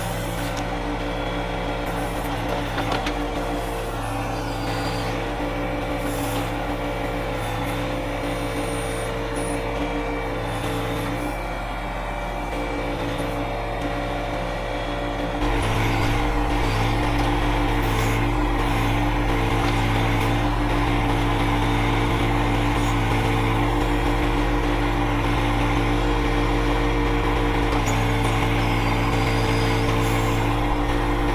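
John Deere 1025R compact tractor's three-cylinder diesel engine running steadily while it powers the 260B backhoe digging a trench. It gets louder about halfway through.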